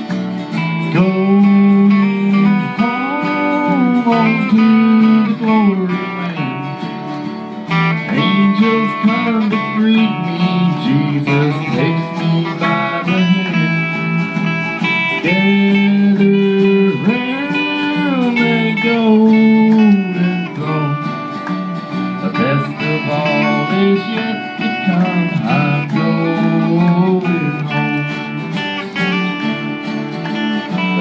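Instrumental break of a country-gospel song played live by a small band: acoustic guitars strumming, with a bass underneath and a lead guitar playing a melody full of sliding, bending notes.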